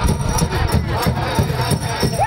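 Powwow drum and singers performing a hoop dance song: a steady drumbeat of about four beats a second under high, wavering chanted vocals.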